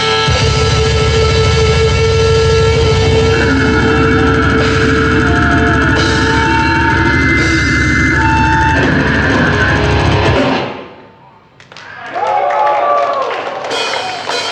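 Old-school death metal played live by a full band: distorted guitars over rapid drumming. The song stops abruptly about ten seconds in, and after a short lull voices and shouts rise.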